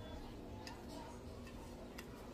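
Faint, scattered light ticks of fingers rubbing and tapping over the painted surface of a terracotta vase, brushing off excess gold foil leaf, over a low steady room hum.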